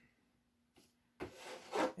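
Near silence, then just past halfway a cardboard model-kit box scraping as it is slid over the boxes stacked beneath it, getting louder toward the end.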